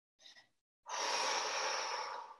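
A person's long breath out, a steady hiss lasting about a second and a half that starts about a second in.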